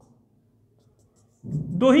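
Faint strokes of a marker on a whiteboard as short dashed lines are drawn; a man starts speaking near the end.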